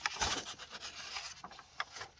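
Paper pages of a bound book being turned by hand: a rustling slide of paper with a few short crackles.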